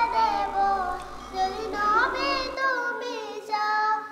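Young girls singing a Bengali gojol, an Islamic devotional song, together.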